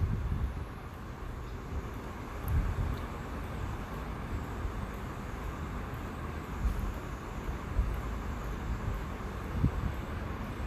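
Electric hand mixer running steadily, its beaters whisking egg whites and sugar in a plastic bowl, with a few low thumps.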